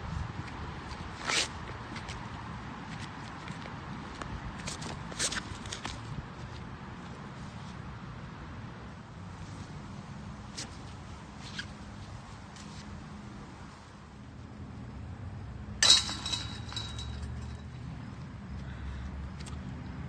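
Steady low outdoor background rumble with a few faint clicks. About two-thirds of the way through, a single sharp knock is followed by a brief high metallic-sounding ring.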